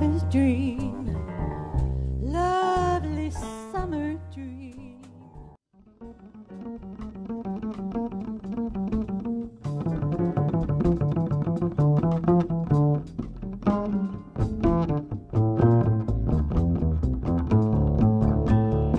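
Live jazz-fusion band: a vocalist sings the tail of a phrase with vibrato over double bass, then the music thins to almost nothing about five and a half seconds in. Double bass, keyboard and drums then come back in as an instrumental passage that grows louder and busier from about ten seconds in.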